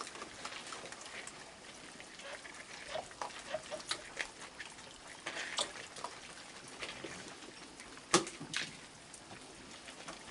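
Raccoons eating kibble from a tray on a wooden deck: scattered crunching and clicking, with one sharper click about eight seconds in.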